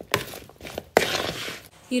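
A metal spoon stirring a chopped vegetable and bean salad in a plastic mixing bowl: two sharp clinks about a second apart, the second followed by a short scraping rustle of the wet vegetables.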